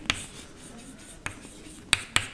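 Chalk writing on a blackboard: a faint scratching with a few sharp taps of the chalk against the board.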